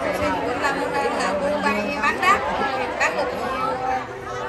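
Many voices talking over one another: crowd chatter with no single clear speaker.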